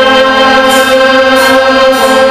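School concert band of flutes, clarinets and saxophones holding a sustained chord, with light high percussion strokes about a second in and again shortly after.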